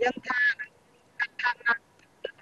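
A woman talking over a video-call line in short bursts of syllables, her voice thin with little low end.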